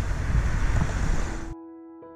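Wind buffeting a camera microphone while riding a bicycle: a loud, rough low rumble that cuts off abruptly about one and a half seconds in, replaced by soft piano background music.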